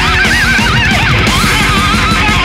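Heavy metal music: a squealing lead guitar line with wide pitch bends and vibrato over distorted rhythm guitar and a driving drum beat.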